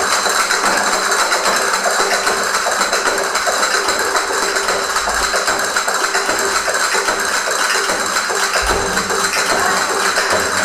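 Live flamenco music carried by a fast, dense rattle of percussive taps.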